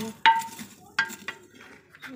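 Lumps of charcoal clinking against each other and a metal scoop as they are tipped into a clay sigri stove. There are two sharp ringing clinks about a second apart, then a smaller rattle.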